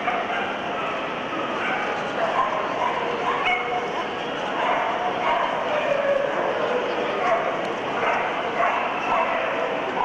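Dogs yipping and whining over the chatter of a crowd, a steady, busy din with no single sound standing out.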